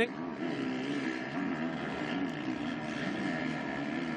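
Motocross bike engines running hard on the track, their pitch rising and falling as the riders work the throttle.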